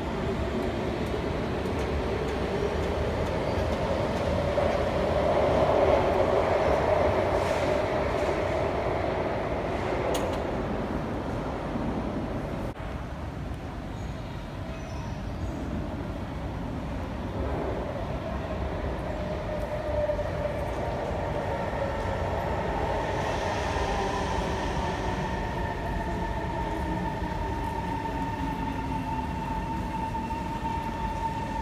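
Kawasaki Heavy Industries C151 MRT trains in an underground station behind platform screen doors: a steady rail rumble with motor whine, loudest about six seconds in. In the second half a train pulls into the platform, with a steady whine that grows toward the end.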